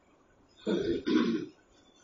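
A man clearing his throat in two quick, loud bursts near the middle.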